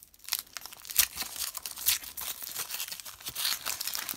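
Thin foil wrapper being peeled by hand off a chocolate egg, crinkling and tearing continuously with many sharp crackles, starting about a quarter second in.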